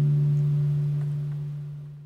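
The song's final guitar chord ringing out and slowly fading, one low steady note outlasting the rest.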